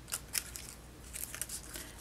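Faint crackling and rustling of a fringed black paper strip being handled, its adhesive backing being peeled off as it is readied for curling, with a couple of sharper paper clicks in the first half second.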